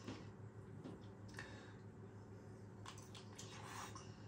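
Very faint chewing: soft wet mouth sounds and a few small smacks from someone eating a cheese-filled sausage, over a low steady hum.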